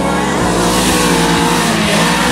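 Rally-prepared Renault Clio hatchback engine running hard at high revs as the car slides sideways through a loose dirt turn, with its tyres spraying gravel.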